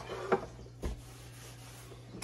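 A glass baking dish and plate being moved on a wooden cutting board: a light knock, then a dull thump a little under a second in, followed by faint room tone.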